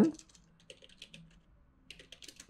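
Typing on a computer keyboard: a run of faint, irregular key clicks, with a short pause a little past halfway before more keystrokes.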